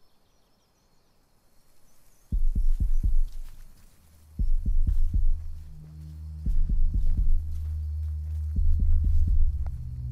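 Low, heartbeat-like thumps over a deep drone, starting suddenly a little over two seconds in and coming in quick clusters, with a steady low tone joining from about six seconds in: a pulsing tension score.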